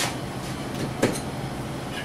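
Two sharp knocks about a second apart as a multi-bell train air horn is handled and set against its wall-mounted wooden bracket, over a steady background hum. The horn is not blown.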